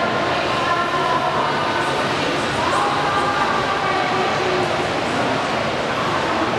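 Steady background noise of an indoor swimming-pool hall, with faint distant voices in it.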